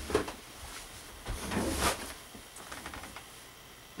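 Faint handling noise as hands take hold of a GoPro HERO2 camera on a tabletop: a few soft knocks and rustles, loudest a little before halfway.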